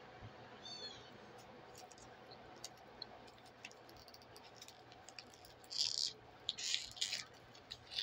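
Close mouth sounds of a man chewing a habanero meat stick: faint wet clicks, then two short, louder hissy bursts about six and seven seconds in.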